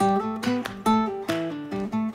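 Background music: a guitar picking out a melody note by note.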